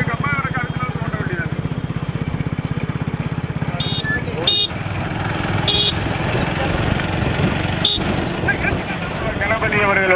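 Motorcycle engine running with a steady low pulsing that fades out about halfway through, under shouting voices. A few short, sharp high-pitched sounds come in the middle, and voices shout again near the end.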